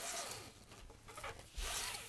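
Nylon paracord strands rubbing and sliding through fingers: a short rustle at the start and another near the end, the second opening with a soft thump.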